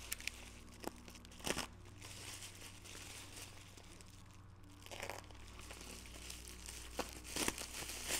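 Clear plastic bubble wrap crinkling as a small part is unwrapped from it by hand. The rustles come in a few short spells, about a second and a half in and again from about five seconds on.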